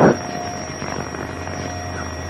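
Steady hum and hiss of a radio channel on an old recording, with a faint constant whine, heard in a short pause between transmitted words.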